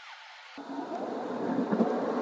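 Faint, steady tyre and road noise inside a Tesla's cabin at low speed. It is muffled at first, then comes up fuller about half a second in.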